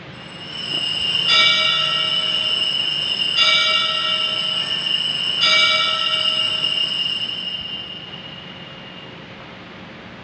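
Church altar bells rung at the elevation of the host during the consecration: a sustained high ringing with three louder bell strokes about two seconds apart, dying away in the last few seconds.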